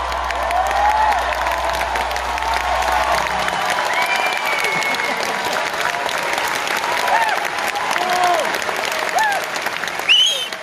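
Theatre audience applauding and cheering, with shouts and whoops rising over the clapping. A low hum left from the band dies away about three and a half seconds in.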